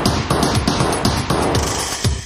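Electronic dance music in a break: a fast roll of drum-machine hits over a noisy wash, with the regular kick beat dropped out until the very end.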